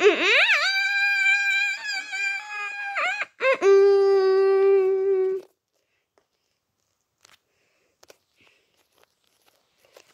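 A child's voice giving a high-pitched pretend wail that slides up and down, then a second, lower cry held steady for about two seconds. It stops a little past halfway through.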